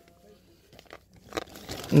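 Plastic-coated shopping bag being handled, rustling and crinkling with a few light knocks; the sounds come irregularly and grow busier in the second half.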